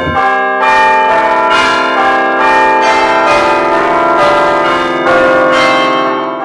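Bells ringing one after another, a new strike about every three-quarters of a second over a steady ringing hum.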